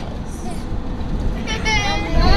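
Steady low rumble of road and engine noise inside a moving car's cabin, with a voice coming in about one and a half seconds in.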